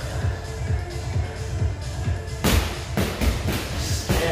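Electronic dance music with a steady beat, and from about two and a half seconds in, two or three sharp thuds of strikes landing on a freestanding punching bag.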